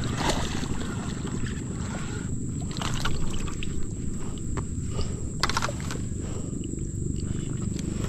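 Wind rumbling on the microphone, with a few short sharp noises about three seconds in and again about five and a half seconds in as a hooked snakehead is reeled up and lifted out of the water.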